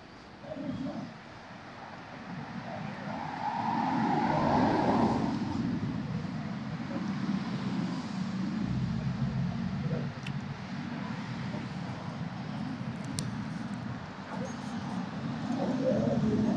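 Street traffic: a motor vehicle's low rumble builds a few seconds in, is loudest around four to five seconds, and carries on at a steady level under faint murmured voices.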